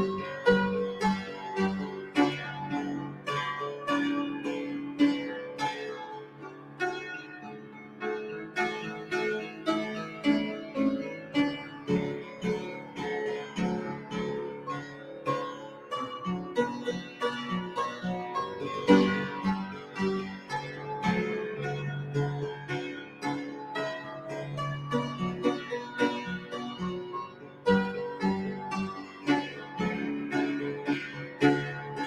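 Instrumental piano music played on an upright acoustic piano together with a Yamaha digital keyboard: a continuous flow of quick, closely spaced notes over sustained bass tones, without singing.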